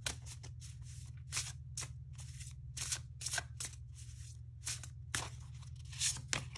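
A deck of oracle cards being shuffled by hand: irregular quick swishes and slaps of cards sliding against each other, over a steady low hum.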